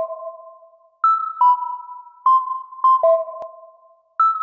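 Electronic music: a sparse, slow melody of pure, ping-like synthesizer notes played on a keyboard controller, each note starting sharply and fading away, with no beat under it.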